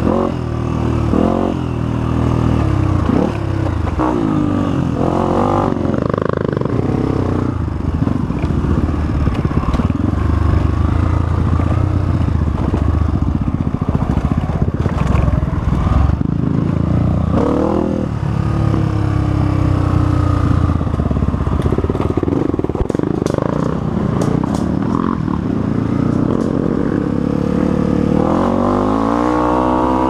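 Honda CRF250F's single-cylinder four-stroke engine ridden off-road, its revs rising and falling continually as the throttle is worked over rough ground. A few knocks and rattles come past the middle, and the engine revs up sharply near the end.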